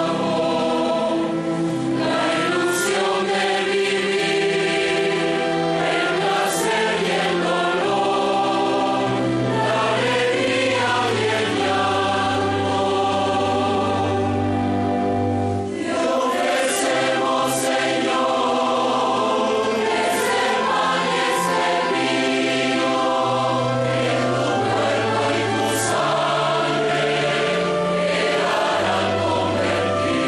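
A large choir singing a hymn in held chords over a string orchestra: the offertory chant of a Catholic Mass.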